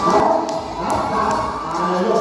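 An audience of many voices cheering and shouting at once, with music playing underneath and a few sharp clicks early in the sound.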